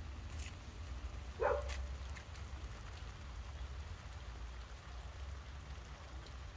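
Steady light rain falling, heard as an even hiss over a low steady rumble, with one brief voice-like sound about a second and a half in.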